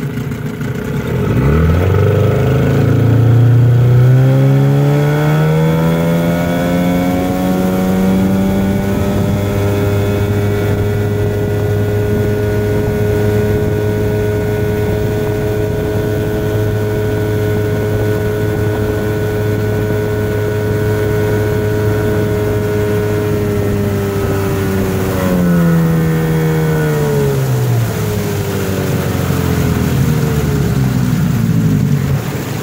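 1975 Evinrude 15 hp two-stroke outboard motor opened up about a second in, its pitch climbing for several seconds, then holding a steady high-speed run under load, over the rush of water along the hull. A few seconds before the end it is throttled back and the pitch falls.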